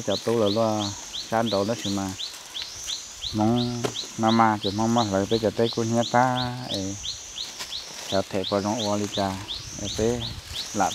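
People talking in a relaxed conversation, with a pause of about a second early on, over high-pitched chirping that repeats about three times a second from a bird or insect.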